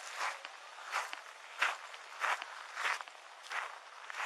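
Footsteps of the person wearing the body camera, walking at a steady pace of about three steps every two seconds.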